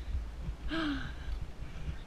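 Wind rumbling on the rider's camera microphone during a bicycle ride, with one short vocal sound from the young rider, falling in pitch, about a second in.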